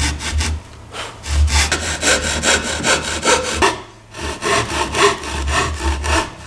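Japanese pull saw rip-cutting along the grain of a thin, light wooden board: rapid, even strokes, with two brief pauses about a second in and near the middle.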